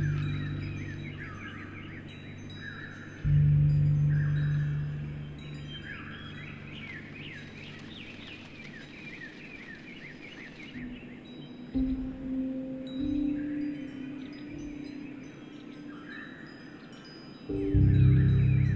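Wind chimes ringing over slow piano music, with deep piano notes struck about three seconds in and again near the end, and birds chirping among the chimes. A steady soft hiss runs underneath.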